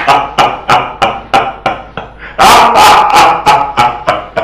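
Two men laughing loudly and heartily, a run of quick 'ha' bursts about three a second that swells into a longer, louder peal about two and a half seconds in.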